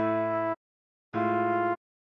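Two short detached notes of a synthesized instrument playing the trombone tutorial melody over a held A major chord, each about half a second long with a clean silence between them.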